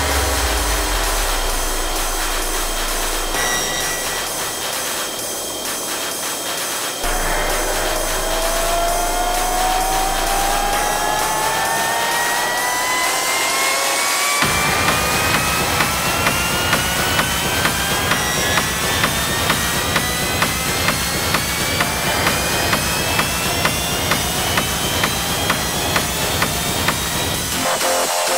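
Dark techno track in a breakdown. The kick is gone and a synth sweep slowly rises in pitch. About halfway through, a driving beat of about two hits a second comes back in under the still-rising sweep, then cuts out briefly near the end.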